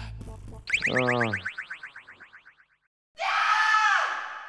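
Comedy sound effects: a fast run of chirps sweeping down in pitch starts about a second in and fades out over about two seconds. After a short silence, a loud held stinger tone with a slight bend in pitch begins near the end.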